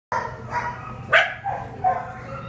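Dogs barking in a shelter kennel, about five short barks, the loudest just after a second in.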